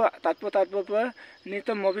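A steady, high-pitched trill of night insects, unbroken behind a man speaking close to the microphone.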